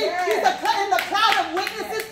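A woman's voice in fast, repeated rising-and-falling syllables that carry no words the recogniser could catch, with sharp hand claps about twice a second.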